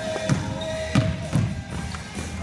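Basketball bouncing on a hardwood gym floor as a player dribbles: three thuds, the second and third close together. A thin steady tone sounds under the first bounces and fades out about a second in.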